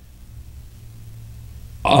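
A pause in a man's lecture that holds only a faint, steady low hum, likely from the handheld microphone and sound system. His speech starts again just before the end.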